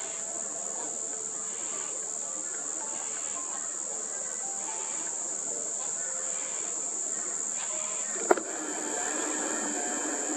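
Insects keep up a steady, high-pitched drone. There is a single sharp click a little after eight seconds in.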